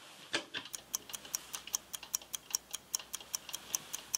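Clock ticking steadily at about five ticks a second, starting just under a second in: a ticking-clock cue marking thinking time for a chess puzzle.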